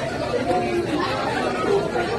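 Many people talking at once: steady, overlapping chatter of a crowd in a room, with no single voice standing out.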